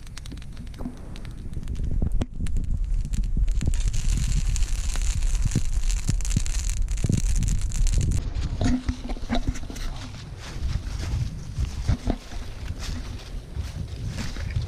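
Wood campfire burning, with scattered crackles and pops over a steady low rumble; a higher hiss joins for a few seconds in the middle.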